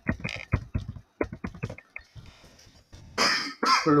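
Typing on a computer keyboard: a quick run of key clicks in the first half, thinning out toward the middle. Near the end, a louder breathy burst of voice.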